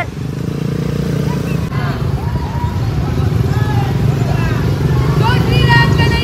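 Motorcycle and quad bike engines running at low speed in a slow-moving group, a steady low rumble that grows a little louder toward the end. Voices call out over it, most of them near the end.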